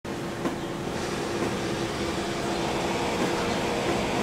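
Electric box fan running steadily: an even whir with a low hum, and a faint tap about half a second in.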